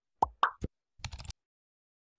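Two short pop sound effects about a quarter and half a second in, then a faint flurry of soft clicks around a second in, from an animated YouTube-logo intro.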